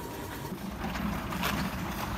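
Enclosed automatic paint-can mixer running, a steady mechanical hum as it shakes a can of paint.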